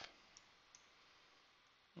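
Near silence with two faint computer-mouse clicks, about a third of a second and three quarters of a second in.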